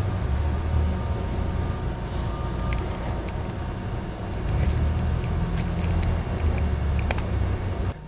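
Steady low rumble of running machinery, with a few faint clicks over it.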